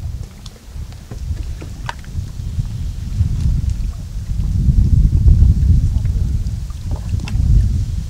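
Wind buffeting the microphone: an uneven low rumble that swells and gusts from about three seconds in, with a few faint ticks over it.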